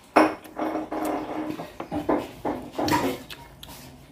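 Scattered light clinks and knocks of dishes on a table during a meal, with a sharper knock right at the start, along with the sounds of someone eating by hand.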